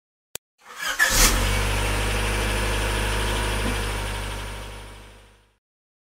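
A single click, then a car engine cranks, catches with a brief rev about a second in, and settles into a steady idle that fades away near the end.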